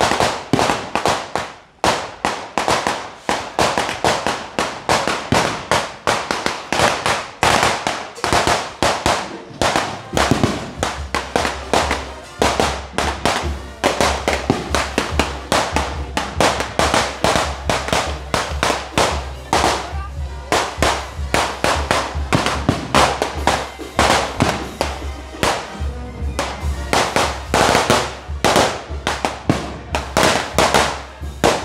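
Firecrackers going off in a long, continuous run of sharp bangs and crackles, several a second, with no break.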